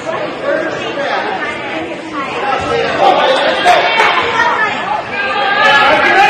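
Chatter of many overlapping voices in a large hall, with no single speaker standing out.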